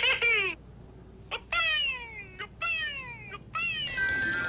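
Cartoon-style sound effect: a series of about four whistle-like tones, each sliding steeply down in pitch and lasting under a second, with short gaps between them.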